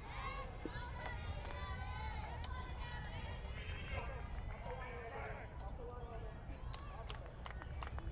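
Faint, distant voices of players and spectators calling out around a softball field, over a steady low outdoor rumble.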